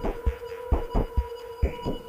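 Electronic IDM music: deep kick-drum hits in an uneven pattern, several a second, under a steady held synth tone.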